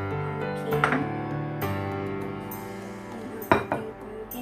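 Soft background music plays over ceramic bowls and a plate clinking as they are lifted and set down on a counter, with a few clinks about a second in and a sharper knock near the end.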